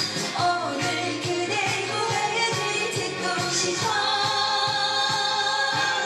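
A woman singing a Korean pop song into a microphone over a backing track with a steady beat, holding one long note over the last couple of seconds.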